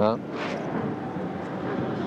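Steady babble of a large outdoor crowd. A man says a short "Hein?" right at the start.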